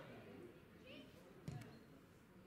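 A football kicked hard once, about one and a half seconds in: a sharp thud with a lighter knock just after. Faint, distant shouting from players is heard underneath.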